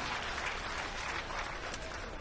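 Large darts-arena crowd applauding a 100 score, the applause slowly dying away.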